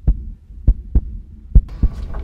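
Slow heartbeat sound effect: low thuds falling in pairs over a steady low drone.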